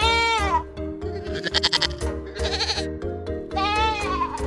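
Lambs bleating over background music: a clear bleat that rises then falls in pitch right at the start and another near the end, with two rougher, hoarser calls in between.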